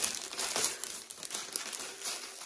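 Clear plastic jewelry bag crinkling as it is handled, in uneven crackles that grow quieter toward the end.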